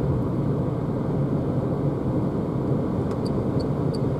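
Steady tyre and wind noise inside the cabin of a Renault ZOE electric car cruising at about 80 km/h, with no engine sound. A light, evenly spaced ticking from the turn signal starts about three seconds in.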